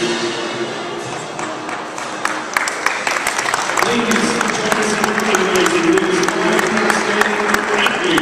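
A small crowd applauding, the clapping growing denser about two seconds in, over music with held notes.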